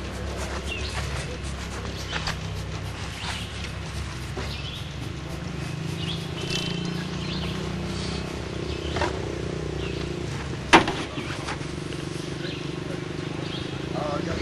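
Motorcycle engine idling in the background, a steady low hum that grows stronger about a third of the way in, with a sharp click about three-quarters of the way through.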